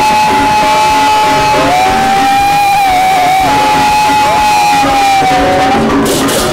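A male singer belting one long, sustained high note through a microphone over band music with guitar. The note is held for most of six seconds and ends near the end.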